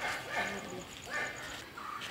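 A dog barking, a few short barks.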